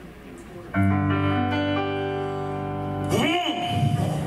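Electric keyboard striking and holding a chord about a second in, its steady notes sustaining for a couple of seconds. Near the end a man's voice slides up and down in pitch over the fading chord.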